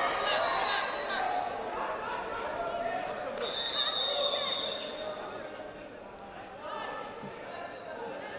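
Voices calling out in a large hall during a wrestling bout, with thuds of wrestlers' bodies and feet on the mat. Two thin, high, steady squeaks come in, one near the start and one about halfway through.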